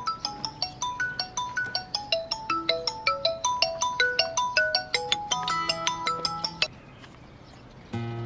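Smartphone ringtone for an incoming call: a quick melody of short marimba-like notes, several a second, that cuts off suddenly about two-thirds of the way through.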